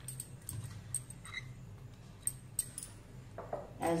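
Faint, scattered light clicks and taps as handfuls of chopped coriander are dropped into a pan of cooking mince, over a low steady hum.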